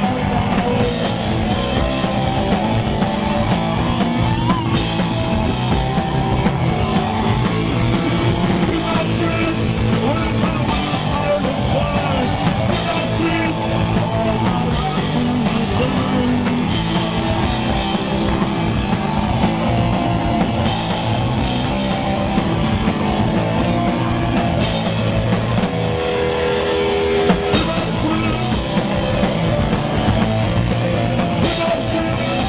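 Punk rock band playing loud and live: electric bass, guitar and drum kit.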